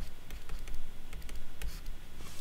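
Pen stylus tapping and scratching on a tablet surface while handwriting, heard as a run of light, irregular clicks.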